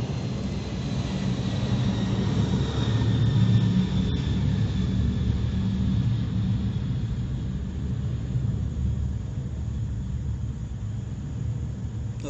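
A distant aircraft passing: a low rumble that swells about three seconds in and slowly fades, with a faint high whine gliding slowly down in pitch.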